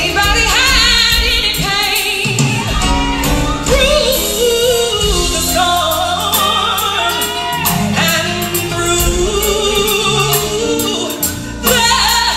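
Live gospel music: a woman's lead vocal, wavering in pitch, with backing singers over a band of bass guitar and drums with cymbal hits.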